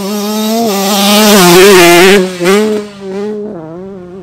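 Yamaha YZ125 125cc single-cylinder two-stroke motocross engine running hard at high revs, its pitch held nearly steady and loudest about a second or two in. The throttle is briefly chopped just after two seconds and again near three seconds, then opened back up.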